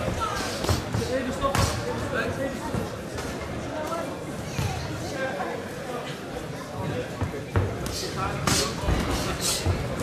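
Gloved punches and kicks landing in a kickboxing bout: scattered sharp slaps and thuds, several close together near the end, over indistinct voices.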